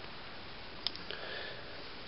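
A faint click, then a short sniff through the nose, over steady background hiss.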